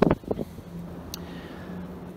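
A man's hesitant 'uh', trailing into a faint held low hum of voice, over quiet outdoor background noise, with a brief click at the start and another a little past the middle.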